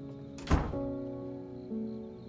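A door shutting with one heavy thunk about half a second in, over soft background music of held chords that change about every second.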